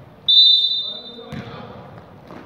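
A referee's whistle blown once, a shrill blast about a second long starting a quarter of a second in and trailing off, then a basketball bouncing on the court floor.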